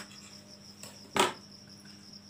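A steady, high-pitched thin trill like an insect's, with a low hum beneath it, and one sharp knock a little over a second in.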